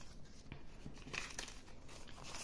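Paper euro banknotes rustling and crinkling as they are handled and counted by hand, with a few brief faint flicks.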